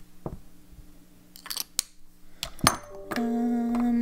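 Fountain pen barrels and caps being handled, giving a few separate light clicks and taps. Near the end a woman's voice holds a steady hummed note for about a second, the loudest sound.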